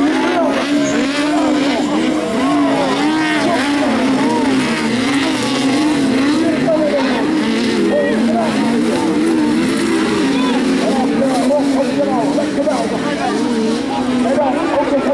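Several 1600cc autocross sprint buggies racing on a dirt track, their engines revving up and down in pitch against each other in a steady loud din.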